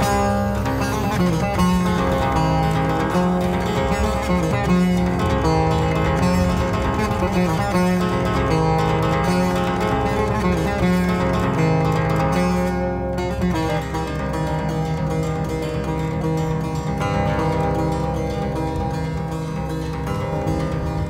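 Solo Cretan laouto, a long-necked lute played with a plectrum, playing an instrumental melody in plucked notes over a low sustained bass, at an even level.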